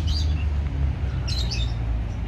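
Birds chirping a few short high notes, near the start and again about a second and a half in, over a steady low rumble.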